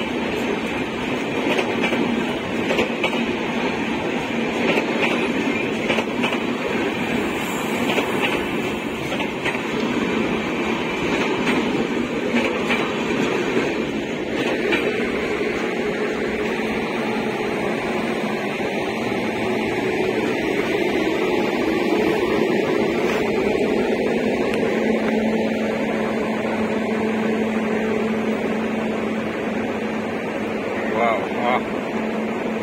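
An express train's sleeper coaches running through a station at speed without stopping, a steady rolling rumble with wheels clicking over the rail joints, the clicks thinning out after about halfway.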